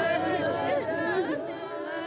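Many women's voices overlapping at once, drawn out and wavering in pitch, as a gathered group mourns; the sound thins out near the end.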